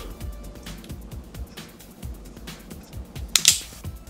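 A can of carbonated soda (Mountain Dew VooDEW) being opened: light clicks and taps, then a sharp pop and hiss of escaping carbonation about three and a half seconds in, the loudest sound. Background music plays underneath.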